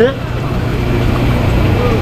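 A steady low mechanical hum with a constant noise haze over it, and faint distant voices near the end.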